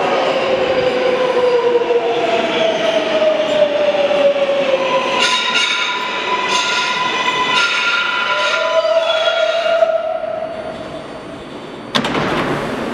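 R143 subway train slowing into a station: an electric whine from the traction motors, gliding down in pitch, then several high steady squealing tones from about five seconds in. The sound dies away over the last two seconds as the train comes to a stop.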